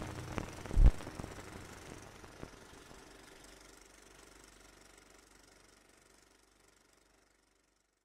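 Outro sound effect: a few sharp clicks and one loud deep thump about a second in, then scattered ticks and a faint crackling hiss that fade away to silence.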